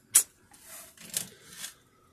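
A sharp click, then faint rubbing and scraping as a hand handles a wood-PLA 3D-printed figure on the printer bed.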